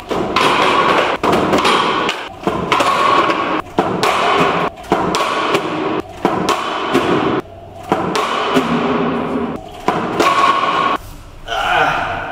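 Lou Board 3.0 electric mini skateboard rolling on a concrete floor and sliding on a low metal rail during board-slide attempts, with repeated thuds as the board and feet hit down. It comes as several short runs, one after another, each broken by a knock.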